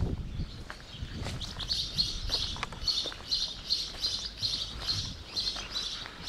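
A small bird chirping: a steady run of short, high notes at about three a second, starting a second or so in, over a low rumble.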